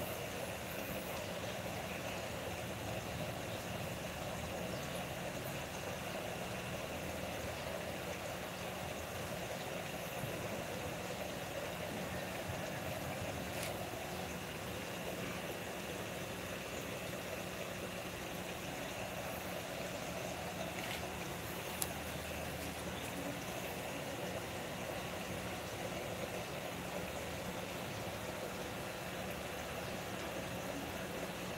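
Steady background hum and hiss with no changes, with a single faint click about 22 seconds in.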